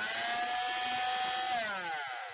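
Oscillating multi-tool with a grit-edged segment blade fitted, running unloaded at full speed with a steady high whine. About one and a half seconds in it is switched off and winds down, its pitch falling.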